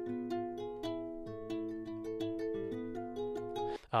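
Virtual nylon-string guitar (UJAM Virtual Guitarist SILK 2) picking the strings of a held chord one at a time, a steady run of plucked notes about four a second, each left ringing under the next.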